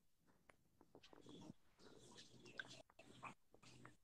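Near silence: room tone with faint, irregular small clicks and rustles.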